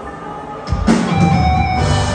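Live rock band playing through a concert PA: soft held tones at first, then about three-quarters of a second in the drums and bass come in and the whole band plays loud.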